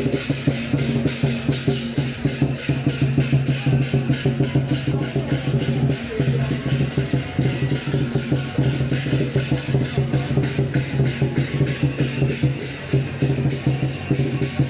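Chinese lion-dance drum and cymbals beating a fast, steady rhythm, about four strikes a second, with no pause.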